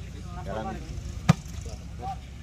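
A volleyball being served: one sharp slap of a hand striking the ball a little over a second in. Short shouts from players and onlookers come just before it.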